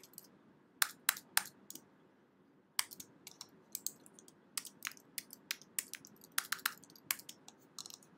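Computer keyboard typing: a few keystrokes about a second in, a short pause, then a longer run of quick keystrokes from about three seconds in.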